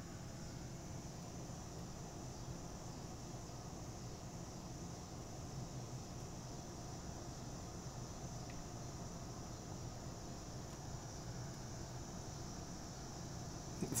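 Steady chorus of night insects, one constant high-pitched drone, over a low steady hum. A short laugh comes at the very end.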